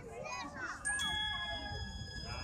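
Children's voices chattering in the crowd, then about a second in a held musical chord of steady high tones comes in over them.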